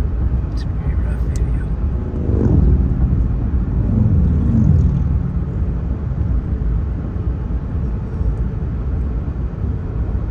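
Steady road and engine rumble from inside a moving vehicle on the highway. About two seconds in, an oncoming vehicle passes with a sound that falls in pitch over two to three seconds. Two short clicks come in the first second or so.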